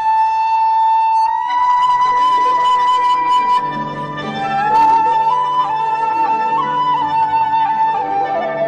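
Background music: a flute playing slow, long-held notes that step between pitches, with a low sustained accompanying note coming in about halfway through.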